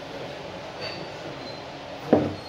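Glass cocktail glass handled in the hand: a faint clink with a brief high ring about a second in, then a fainter ring, over a steady background hiss.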